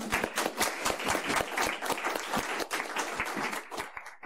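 A roomful of people applauding, the clapping thinning out near the end.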